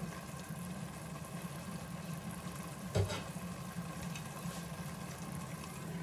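Eggplant and dried-seafood stew simmering in a stainless steel pot on low heat, with quiet steady bubbling over a low steady hum. There is one brief knock about halfway through.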